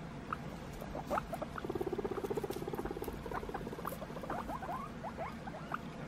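Guinea pigs squeaking with many short rising notes, with a low, rapidly pulsing purr-like rumble running for about a second and a half from shortly after one and a half seconds in.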